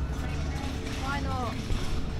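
Steady low rumble of street traffic, with a short indistinct voice about a second in.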